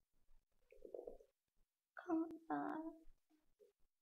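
Faint voice sounds in a pause of speech: a short muffled murmur about a second in, then a brief quiet spoken utterance with a couple of sharp clicks around two seconds in.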